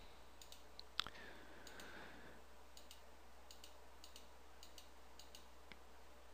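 Near silence: faint room tone with one short click about a second in and a few very faint ticks later on.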